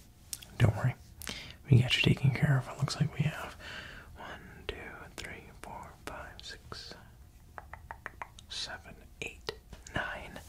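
A man whispering and speaking softly in close-up, with a quick run of small clicks near the end.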